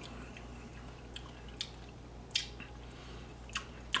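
A handful of faint lip smacks and mouth clicks from someone tasting a sip of tequila, over a steady low hum.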